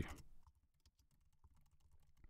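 Faint typing on a computer keyboard: a quick, irregular run of light keystrokes.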